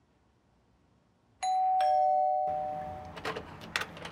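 Two-tone doorbell chime, a ding-dong: a higher note and then a lower one, sounding about a second and a half in and ringing on for over a second. Two sharp clicks follow near the end.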